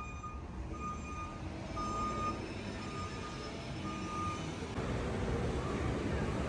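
A vehicle's reversing alarm beeping over street noise: a steady high beep about half a second long, repeating about once a second. The beeps stop about four and a half seconds in, and a denser, louder background noise takes over.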